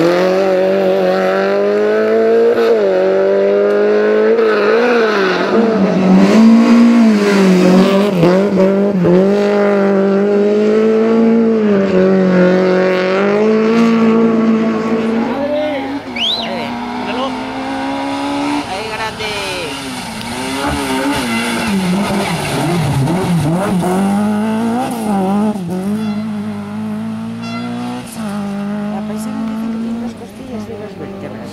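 Peugeot 205 rally car's engine revving hard, its pitch climbing and dropping again and again with gear changes and lifts through corners. It is softer and farther off in the second half, with a brief high rising whistle about halfway through.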